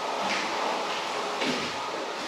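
A 13-inch carbon steel plastering trowel scraping across a wetted, touch-dry finish coat of plaster under firm pressure, in long sweeping strokes: the wet-trowel pass that closes and smooths the surface.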